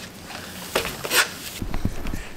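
Handling noise: two short sharp clicks about half a second apart, then low thumps near the end.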